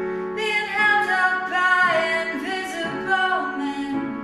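A woman singing a slow melody over held chords on a digital piano; the piano chord rings on under the voice, and a new chord is struck near the end.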